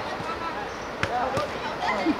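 Two sharp thuds of a football being struck, about a third of a second apart and about a second in, among young players' short shouts.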